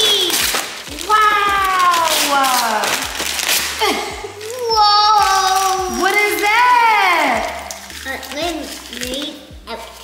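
Voices exclaiming, a child's among them, in long calls that slide up and down in pitch, with wrapping paper tearing and crinkling in the first few seconds.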